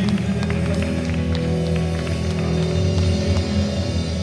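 Hammond stage keyboard playing slow, sustained organ chords over held bass notes.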